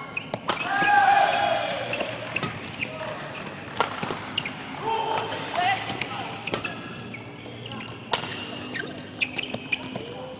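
Badminton rally in doubles play: sharp racket hits on the shuttlecock at irregular intervals of about a second, with short pitched squeaks and voices echoing in a large hall between them.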